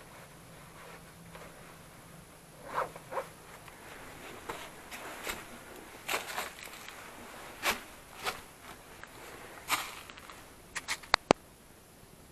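Footsteps rustling in dry fallen leaves and loose earth, irregular steps about a second apart up a steep slope. Near the end there is a quick run of sharp clicks, the last one the loudest.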